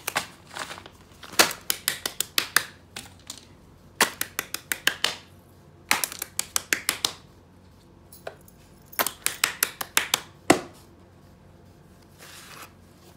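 Hands handling a clear plastic zip pouch of pens and markers: bursts of rapid clicks and crinkles, several clusters a second or two apart.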